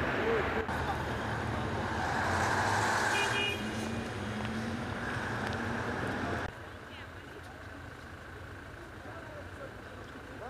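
Steady traffic and street noise. About six and a half seconds in it cuts abruptly to a quieter background.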